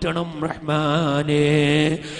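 A man's voice chanting a melodic, drawn-out supplication, with a long held note that wavers in pitch through the second half.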